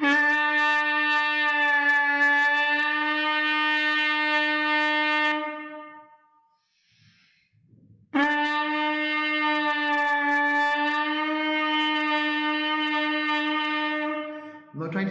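Trumpet leadpipe buzz: lips buzzing through the mouthpiece into the leadpipe, holding two long, steady notes of about five or six seconds each, with a short breath between them. The pitch sits a little below concert E-flat, the natural pitch of this leadpipe.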